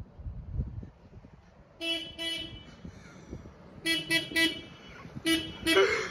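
A vehicle horn sounding short toots of one steady pitch: two about two seconds in, three close together around four seconds, and two more near the end.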